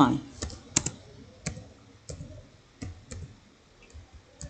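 Computer keyboard being typed on slowly: about nine separate key clicks, unevenly spaced, as a short phrase is typed.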